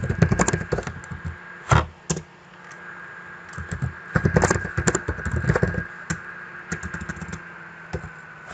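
Computer keyboard typing in several short bursts of keystrokes with pauses between them.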